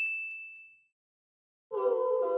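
A single bright ding sound effect with a clear high ring that fades away within the first second. After a short silence, music with held notes starts near the end.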